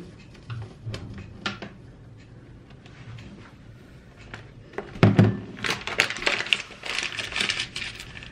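A few light clicks and taps, then from about five seconds in a dense crackling of a paper flour bag being handled and folded shut.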